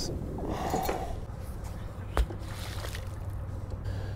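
Rope and gear being handled in the bow of a small boat grounded on a sandbar: scraping and rustling, with one sharp knock about two seconds in, over a steady low rumble.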